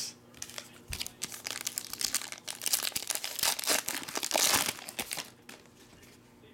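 Foil wrapper of a Topps Tribute baseball card pack being torn open and crinkled by hand: a run of crackling rustles starting about a second in, loudest near the end, then stopping shortly before the end.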